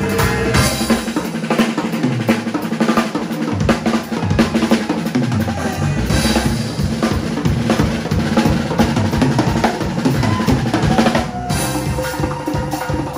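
Live percussion playing a fast, dense rhythm: a hand-held frame drum together with a drum kit, its bass drum, snare and cymbals. The sound changes abruptly near the end.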